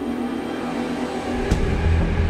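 Trailer score: held music tones, then a sharp impact hit about one and a half seconds in that brings in a deep, steady low rumble.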